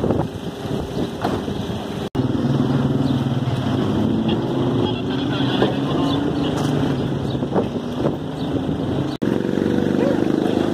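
A vehicle engine running steadily, with voices around it; the sound drops out abruptly about two seconds in and again near the end.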